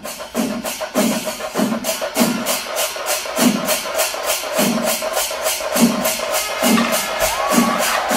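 Kerala temple percussion ensemble playing: rapid metallic cymbal strikes over a steady beat of deep drum strokes, about two a second.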